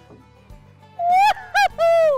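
A woman whooping in delight, three quick rising-and-falling "woo-hoo-hoo" cries starting about a second in, celebrating a fish landing in the net.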